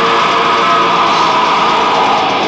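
Black metal band playing live: a dense wall of distorted electric guitars and drums, with a high tone held steadily over the top.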